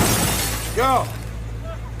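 The tail of a loud crash of shattering glass and breaking debris, dying away over the first half second. About a second in comes a man's short groaning cry.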